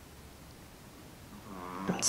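A puppy snoring faintly: one drawn-out, droning snore that swells in the last half-second.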